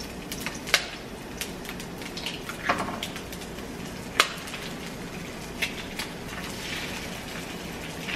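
Onion frying in oil in a nonstick pan with a steady sizzle, broken by several sharp knocks as eggs are cracked against the pan; the loudest knock comes about four seconds in.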